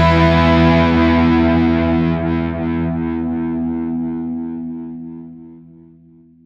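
The final distorted electric guitar chord of a punk song ringing out after the last hit and slowly fading away, dying out near the end.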